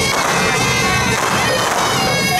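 Shrill double-reed horns (suona) playing held, wailing notes, with loud noisy percussion crashes through them about twice.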